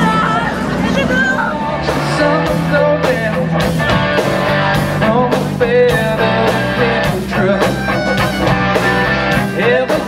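Band playing an instrumental rock intro on guitars, bass and drums, with a steady beat of about two drum hits a second setting in about two seconds in. Voices in the crowd are heard at the start.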